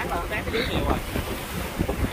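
Sea waves washing in over a rocky shore, with strong wind buffeting the microphone as a steady low rumble.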